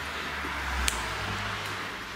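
Air-cooled BMW boxer twin idling steadily in a low, even rumble, freshly started after carburettor and ignition work; it sounds like an old steam engine. A single light click about a second in.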